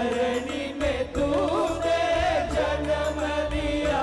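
Live worship song: male voices singing into microphones over a band with keyboard and electric guitar and a steady bass, with one long held sung note through the middle.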